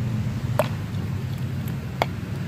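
A steady low background hum, with two sharp light clicks, one about half a second in and one at the end, as a metal motorcycle oil filter screen is handled and dipped over a plastic cup of cleaning fluid.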